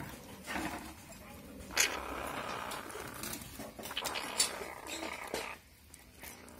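Young civets feeding on a rat in a wire cage: chewing and gnawing noises with two sharp clicks, one a little under two seconds in and one a little over four seconds in.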